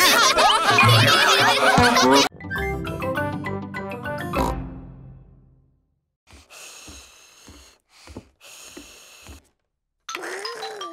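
Several cartoon pig characters laughing together, followed by a short closing music jingle that fades out about five seconds in. A few faint, short sounds come near the end.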